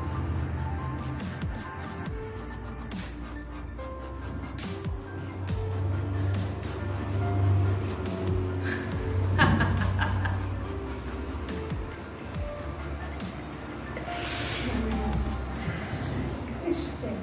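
Background music with a sustained bass line and a shifting melody.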